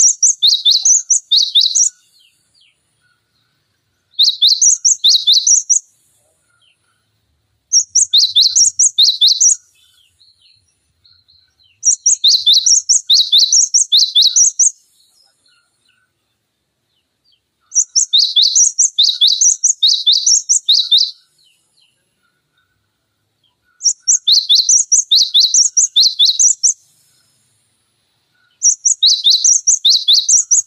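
Cinereous tit (gelatik batu) singing: bouts of quick, high, paired whistled notes, each bout two to three seconds long, repeated about every four to six seconds, seven bouts in all.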